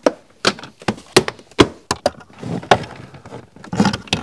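Plastic footwell trim panel of a BMW G20 being pressed back into place: about a dozen sharp, irregular clicks and knocks as its clips snap in and the panel is pushed home.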